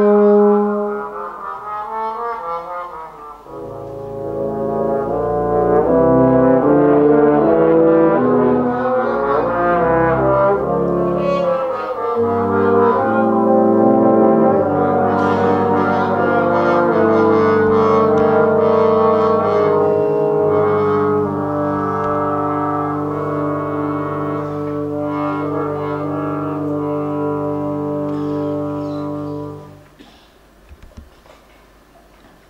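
Brass ensemble of two solo tubas, bass trombones and trombones playing, first in quickly shifting notes and then in long held low chords. The music cuts off suddenly near the end.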